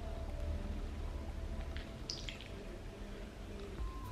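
Faint wet squishing of runny clay paste being worked by hand into wet hair, with a few soft squelches about two seconds in.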